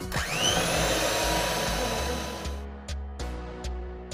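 Electric hand mixer switching on with a rising whine and running with its beaters in a bowl, beating butter with sugar; it cuts off suddenly about two and a half seconds in. Background music with a steady beat follows.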